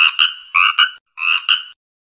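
Frog croaking: three quick croaks about half a second apart, each a double pulse.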